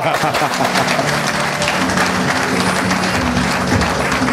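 Studio audience applauding while a song plays with steady held low notes.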